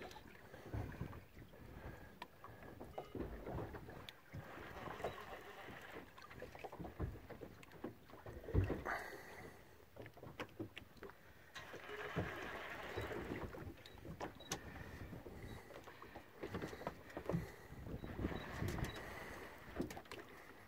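Sea water lapping against a small boat's hull, with wind buffeting the microphone in uneven gusts and a few small handling clicks.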